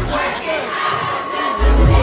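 Concert crowd singing along loudly in unison, carrying the song while the performer's microphone is off. The music's bass drops out, then comes back in about one and a half seconds in.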